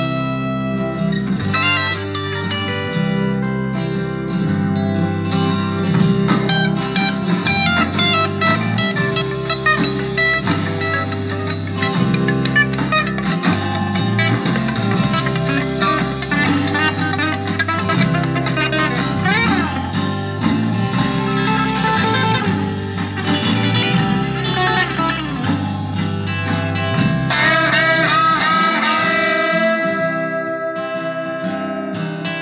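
Stratocaster-style electric guitar playing a lead line with string bends over a backing track, whose low bass notes change about once a second.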